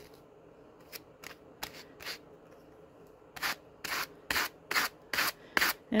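Two hand carders stroked against each other, their wire teeth brushing through Malamute fur. A few faint strokes, then from about halfway a louder, regular run of about two strokes a second.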